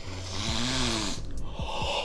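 A man sniffing deeply through his nose at close range: one long inhale lasting about a second, then a shorter breath near the end.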